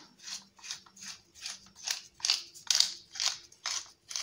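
Pepper mill grinding black pepper in a quick series of short grinding bursts, about two a second.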